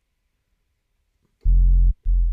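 Near silence, then about one and a half seconds in a single deep synth bass note played from a Maschine pad, held for about half a second and cut off sharply. The bass sound is being auditioned while its EQ filter is set.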